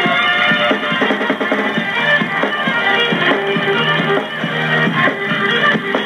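Country band playing an instrumental on fiddle, guitar, electric bass and drums over a steady beat, recorded on Super-8 sound film.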